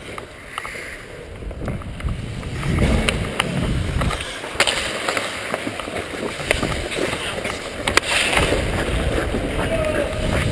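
Ice hockey play heard from a skater's camera: skate blades scraping and rumbling on the ice, louder from about three seconds in, with sharp clacks of sticks and puck, the strongest two near the middle and about eight seconds in.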